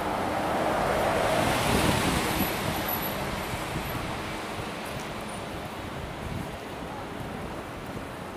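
A city bus passing close by: the rush of its engine and tyres swells to a peak about a second or two in, then fades away.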